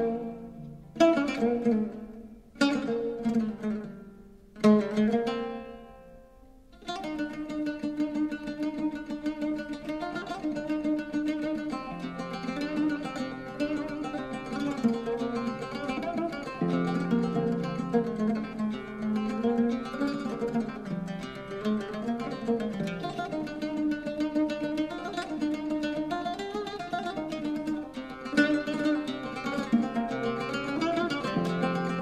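Solo oud played with a plectrum, improvising a taqsim in maqam Rast. A few separate struck notes ring out and die away in the first seconds, then from about seven seconds in it turns to a continuous stream of quick notes.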